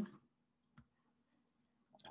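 Near silence broken by a single faint click a little under a second in, typical of a computer mouse button pressed to start selecting text on screen.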